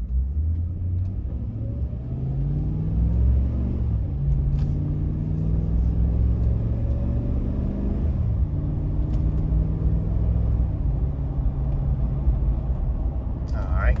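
A 2012 Chevrolet Silverado Z71's engine, heard from inside the cab, accelerating the truck from a standstill through its automatic transmission. The engine note climbs, drops at an upshift a little over three seconds in, climbs again, and drops at a second upshift about eight seconds in, then runs steadily at cruising speed.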